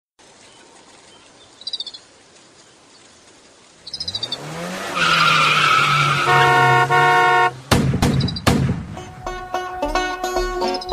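Car sound effects: an engine starts up, rises in pitch and runs steadily while a horn sounds twice, followed by two sharp bangs. Banjo music starts near the end. In the quieter first few seconds there are two brief, rapid chirping trills.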